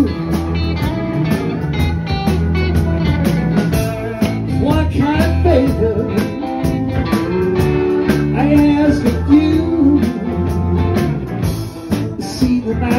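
Live blues band playing a slow blues: electric guitars, bass, keyboards and drums, with a lead line of bent notes weaving over a steady beat.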